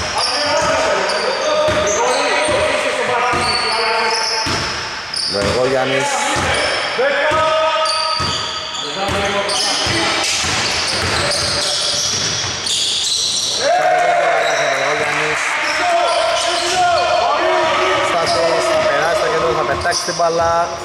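A basketball being dribbled on an indoor court, its bounces ringing in a large hall. Sneakers squeak on the floor and players call out during live play.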